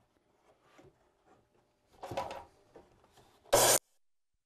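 Faint scraping and shuffling of a rough board being slid into place on the saw table, a louder scrape about halfway through, then near the end a brief, very loud burst of a DeWalt miter saw running through the wood that stops abruptly.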